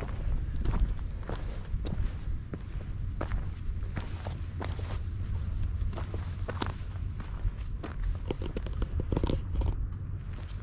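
Footsteps crunching on a stony dirt track, about two steps a second, over a steady low rumble.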